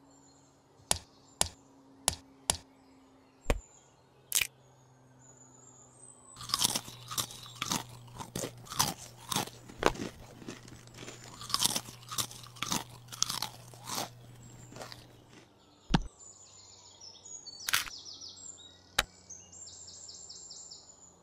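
Sharp single clicks about once a second. Then, from about six seconds in, some nine seconds of dense crunching and cracking as a plastic toy egg is split open. A few more sharp clicks follow near the end.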